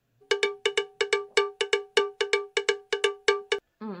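A rapid, even run of ringing cowbell-like strikes, about six a second for some three seconds, laid over big gulps of a drink as an edited-in sound effect.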